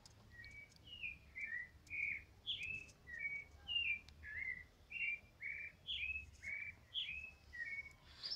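A bird singing a steady run of short, high chirping notes, about three a second, each note sliding up or down in pitch.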